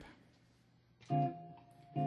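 A D minor 7 flat 5 (half-diminished) chord struck once on a semi-hollow electric guitar about a second in, ringing and fading.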